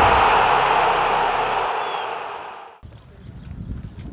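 Loud rushing noise of a video intro sting that fades and cuts off almost three seconds in. Faint outdoor ambience follows.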